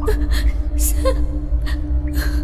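A person's quick, gasping breaths over a low, steady drone of film score.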